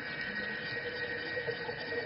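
A quiet, steady drone of a few held tones over a faint hiss.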